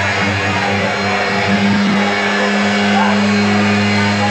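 A sustained low drone from the band's amplifiers, holding steady and swelling about one and a half seconds in, over crowd noise, as the guitar strumming has just stopped.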